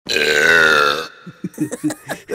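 A long, loud cartoon burp lasting about a second and falling slightly in pitch, followed by short snatches of giggling.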